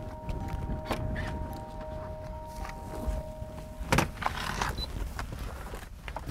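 Footsteps and a car door being opened, with a sharp latch click about four seconds in, over a low wind rumble. Held background music notes sound until about then.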